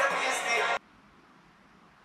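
Background music cuts off abruptly just under a second in, leaving near silence.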